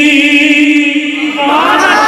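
A man's voice chanting at a microphone, holding one long drawn-out note with a slight waver, then starting a new rising phrase about a second and a half in.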